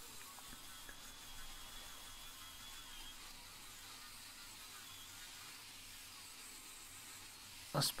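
Faint steady hiss, with a faint high thin whistle through the first three seconds.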